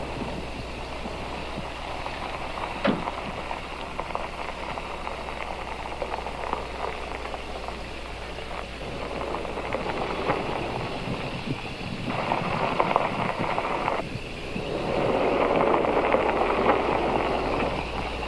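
Car driving, a steady rush of engine and tyre noise that grows louder in the last few seconds as the car draws near.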